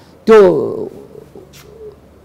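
A man's voice drawing out one word with a falling pitch, then pausing.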